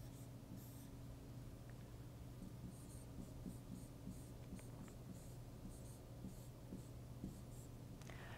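Marker pen writing on a board: a run of short, faint strokes as words are written out, over a steady low hum.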